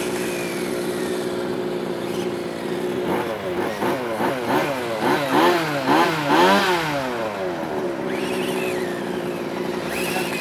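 Radio-controlled motorcycle's motor whining as it drives, with a run of quick throttle blips from about three to seven seconds in, its pitch rising and falling about twice a second.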